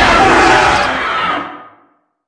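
Dense, noisy film soundtrack mix of music and effects that fades out to silence near the end.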